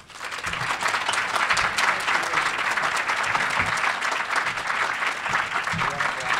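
Audience applauding, many hands clapping together; it breaks out suddenly and holds steady.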